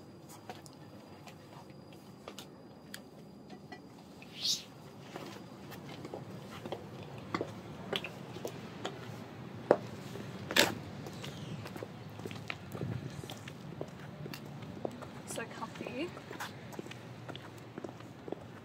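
Footsteps in 7-inch platform mule high heels: soft and muffled on carpet at first, then sharp heel clicks on concrete from about five seconds in. A brief rising squeak sounds about four seconds in.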